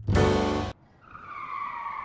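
Upbeat music with a plucked upright bass cuts off abruptly less than a second in. A second later a sustained tyre-squeal screech begins and holds steady, a comic sound effect laid over the picture.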